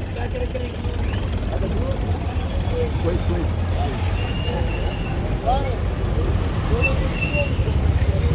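Street traffic of buses and cars idling and moving close by, a steady low engine rumble, with passers-by's voices in snatches over it.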